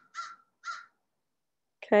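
A bird calling: short calls in quick succession, ending within the first second.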